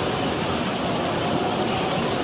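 Fast-flowing muddy floodwater rushing, a steady, dense roar of water.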